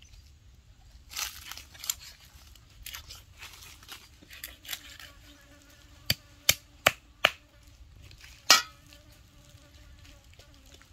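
Knife cutting raw chicken on a wooden chopping board: soft slicing and tearing of meat, then four quick sharp chops into the board and a louder single chop near the end.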